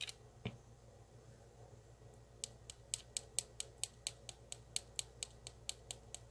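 Faint, light clicks of a small plastic container of binding powder being tapped to shake powder out: one click shortly after the start, then a steady run of taps about three or four a second from about two seconds in.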